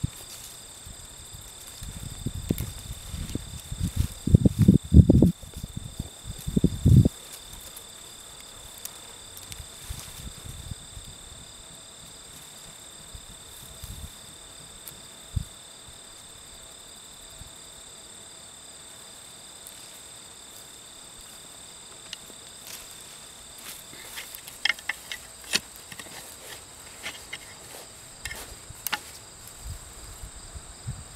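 Steady high-pitched chorus of crickets or other insects. Dull low thuds of digging in soil about two to seven seconds in are the loudest sounds, and a run of sharp scrapes and rustles comes near the end as the garden fork and hands pull up tubers.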